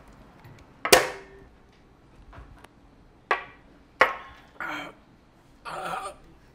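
Shot glasses knocked down onto a table: a sharp, ringing knock about a second in, then two more knocks a few seconds later.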